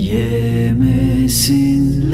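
Slow Turkish lullaby sung by a man, long held notes over soft sustained backing.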